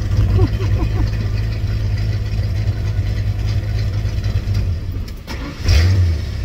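A classic Ford Maverick's engine idles with a steady low rumble, sags and dies out about five seconds in, then is cranked and fires back up with a loud surge near the end. The car is hard to start.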